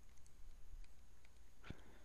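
Faint light ticks of a stylus writing on a tablet screen over a low steady hum, with one brief, louder sound near the end.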